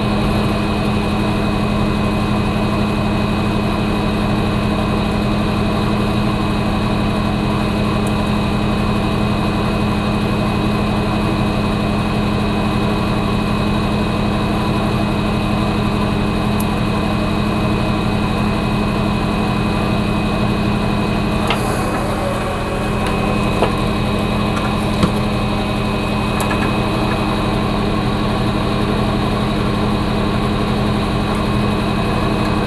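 Steady machine hum of a small electric motor or fan running, with several fixed pitches in it. Two faint clicks come about three quarters of the way through.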